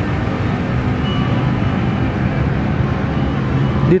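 Steady road traffic noise, the low hum of vehicles running along a wide multi-lane road.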